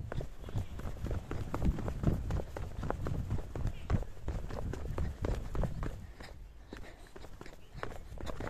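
Footsteps of a person in sneakers walking down concrete steps, an uneven run of soft thuds, with cloth rustling against the phone's microphone and a low rumble from handling.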